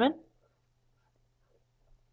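The end of a spoken word, then near silence over a faint low hum, with a few soft ticks of a stylus writing on a tablet.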